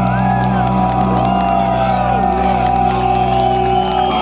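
A live rock band's final chord held and ringing out steadily while the crowd cheers and whoops; the chord stops right at the end.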